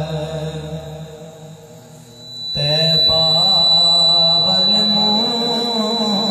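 Male voice chanting a naat in long, wavering melismatic phrases. One phrase fades away, and a new held phrase breaks in abruptly about two and a half seconds in, with a thin steady high tone behind it from then on.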